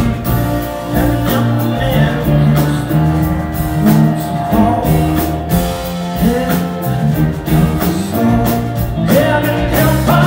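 Live soul band playing with drums, bass and electric guitar, and a male lead singer holding and bending long notes over them.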